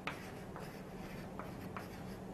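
Chalk writing on a chalkboard: faint scratching strokes with a few light taps of the chalk against the board.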